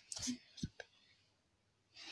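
A brief breathy, whispered vocal sound, then a soft thump and a faint click from clothes being handled at a dresser drawer.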